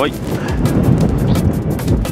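Wind buffeting the microphone, a steady low rumble, with scattered light clicks.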